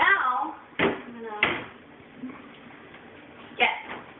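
Kitchen cabinet door and cookware knocking as a pan is taken out of a lower cabinet: two sharp knocks about a second in and another clank near the end.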